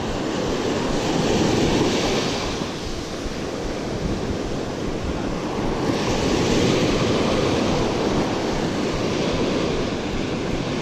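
Ocean surf breaking and washing up the sand at the water's edge, swelling twice as waves rush in, about a second in and again around six seconds.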